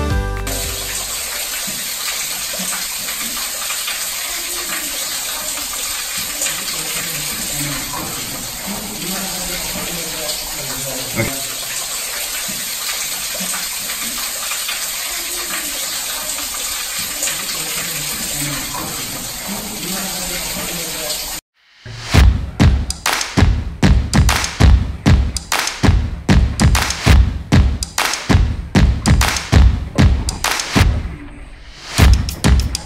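Underground waterfall: water falling steadily from the cave ceiling into a pool, a constant rushing splash. About 21 seconds in it cuts off and music with a steady, punchy beat comes in.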